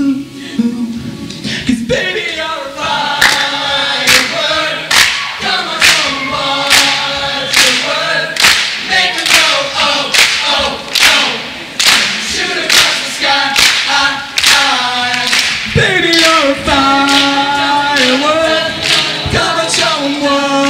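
Teenage male a cappella group singing in several parts, without lyrics the recogniser could pick out. From a few seconds in to about three quarters of the way through, a steady beat of hand claps, a little over one a second, runs under the voices.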